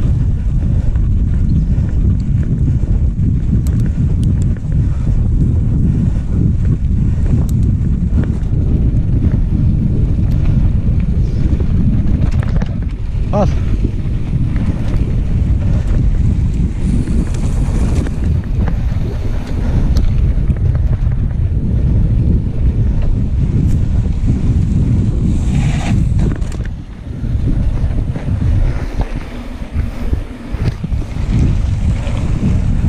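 Wind buffeting the microphone of a handlebar-mounted action camera on a mountain bike riding a dirt track, a loud, steady rumble. Scattered clicks and rattles come from the bike over the rough ground, and the noise drops briefly near the end.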